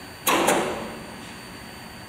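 Steady hum of the fan drawing the fog vortex, with a brief sharp double click and rattle about a quarter second in that fades within half a second.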